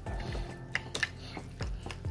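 A utensil clicking and scraping against a glass dish as crab-meat stuffing is stirred: a few sharp clicks over soft background music.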